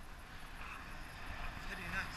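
Wind noise from airflow rushing over an action camera's microphone in flight under a tandem paraglider, a steady rushing that grows a little louder toward the end.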